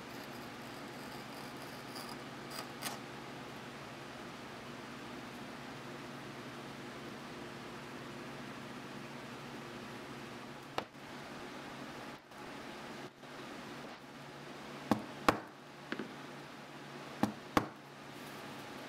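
Stitching groover scraping a stitch channel along the edge of vegetable-tanned cowhide, a soft, steady scratching over a low room hum. Near the end come a few sharp clicks and knocks.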